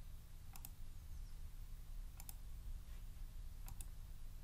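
Computer mouse clicks: three quick pairs of ticks about a second and a half apart, over a low steady hum.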